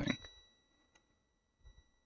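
Multimeter in continuity mode giving one steady high beep as the test probe touches the power-supply chassis, a sign that the ground path conducts. A faint click of the probe comes partway through.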